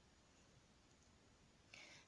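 Near silence: faint room tone, with a brief soft hiss near the end.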